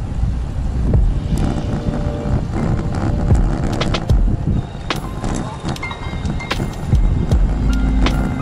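Wind buffeting a handlebar-mounted camera's microphone, with road rumble and scattered clicks and rattles from a road bicycle being ridden at speed.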